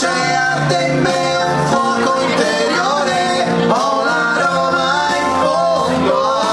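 Two men singing a melodic song through microphones over amplified backing music.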